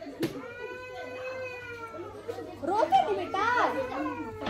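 Children's voices: one long drawn-out call, then several children talking and shouting over one another from about two seconds in. A single sharp pop comes just after the start.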